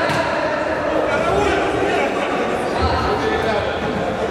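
Indistinct voices of players and onlookers echoing in a large sports hall, with an odd thud among them.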